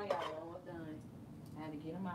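A woman's voice, in two short stretches with no clear words.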